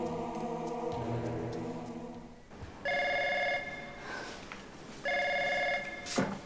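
Held chords of background music end about two and a half seconds in. Then a landline telephone rings twice with a steady electronic tone, each ring lasting under a second, about two seconds apart.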